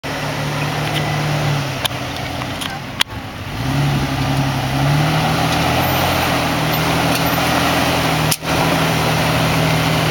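Jeep Wrangler engine working at low speed as the Jeep crawls up slickrock. The steady engine note eases off about two seconds in, then picks up again and holds. A few sharp clicks with brief dropouts come about 2, 3 and 8 seconds in.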